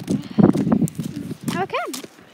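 Footsteps on a gravel track with voices; near the end a short voiced call rises and falls in pitch.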